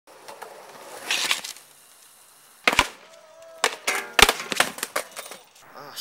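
Skateboard wheels rolling on concrete, then a sharp loud crack about two and a half seconds in and a run of clattering impacts as the board and skater hit the ground in a fall. Voices cry out during the impacts.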